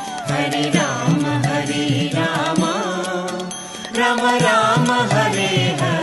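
Hindu devotional kirtan music: melodic chanting with instrumental accompaniment and a steady beat of light percussion strikes.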